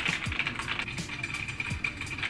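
Typing on a computer keyboard: a run of short, irregular key clicks, with background music underneath.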